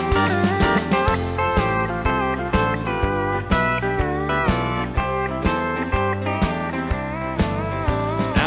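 Instrumental break of a honky-tonk country song: a steel guitar plays a lead with sliding notes over bass and a steady beat, with no singing.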